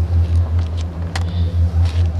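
Steady, loud low rumble of street background with a regular pulse, as from a vehicle running nearby, and one sharp click about a second in.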